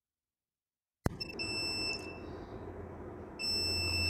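Luminous home inverter's low-battery warning buzzer sounding two long, high-pitched beeps, the second starting a little over a second after the first ends: the inverter's Exide tubular battery is nearly flat and the inverter is about to shut off. A low hum runs under the beeps.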